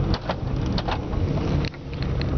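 Suzuki Swift heard from inside the cabin while driving, with steady engine and road noise. Several sharp clicks sound through it, and the level drops briefly near the end.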